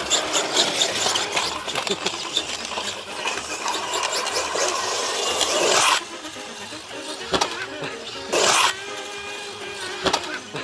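Two RC monster trucks in a rope tug-of-war, a Traxxas X-Maxx against a cheap toy-grade truck, their tyres spinning and scrabbling on wet tarmac and grass in a dense, gritty noise full of clicks. About six seconds in the noise drops sharply, leaving a quieter stretch with two brief scuffing bursts.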